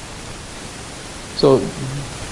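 Steady background hiss of the recording, then a man's voice saying "so" about halfway through.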